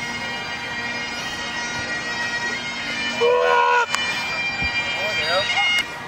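Highland bagpipes playing a held drone and tune, with a voice calling out briefly about three seconds in and again near the end.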